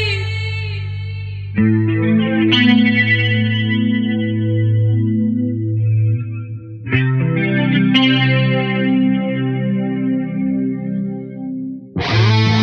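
Music: a quieter passage of a hard rock ballad, led by an electric guitar with chorus and effects playing ringing chords. New chords are struck about a second and a half in, again a second later, and twice more about seven and eight seconds in, each left to fade.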